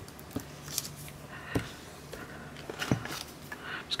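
Quiet hand-handling sounds: light rustling and three soft knocks as a sheet of polymer clay is lifted off a paper measuring sheet and laid onto a tile.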